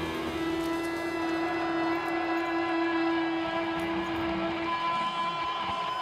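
Electric guitar holding one long sustained note over a rock backing, the held note ending about five seconds in.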